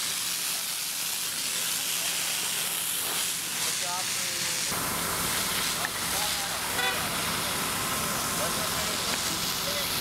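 Steady hiss of a fire hose spraying water onto the street, over a vehicle engine running with a low hum that gets louder about halfway through, and faint voices of people around.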